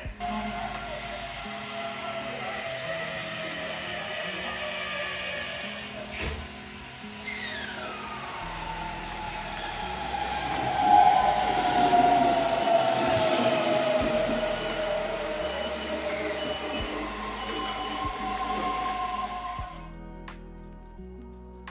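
Keihan 13000-series electric commuter train pulling into the platform, its traction motor whine falling steadily in pitch as it brakes, loudest about halfway through. Background music plays underneath.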